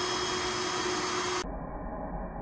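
Vacuum running steadily, drawing yellow jackets alive through a smooth hose into a jug trap: an even rushing noise with a steady hum. About one and a half seconds in it cuts abruptly to a duller, quieter low hum.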